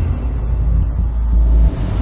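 A deep, loud low rumble of trailer soundtrack bass, held steady and dipping briefly near the end.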